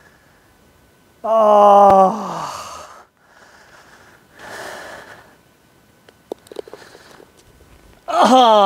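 A man's long groan of frustration at a just-missed birdie putt, held about a second and a half and falling off at the end, followed by heavy sighing breaths.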